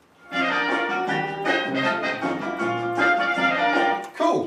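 Upbeat swing orchestral music with trumpet and brass, played from a vinyl LP on a turntable. It starts about a third of a second in, after a brief silence.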